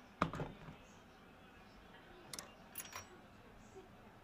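A sharp knock about a quarter second in, then a few light clicks near the three-second mark: kitchen utensils being handled on a counter.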